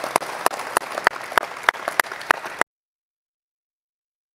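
Audience applause filling a hall, with one clapper standing out close up at about three claps a second. The applause cuts off suddenly about two and a half seconds in, leaving dead silence.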